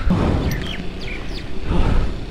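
A few short, high bird chirps over a steady low rumble of wind and handling noise on the microphone.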